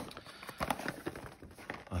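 Cardboard Magic: The Gathering pre-release kit box being handled and slid open: a string of light taps and scrapes, louder at the very start.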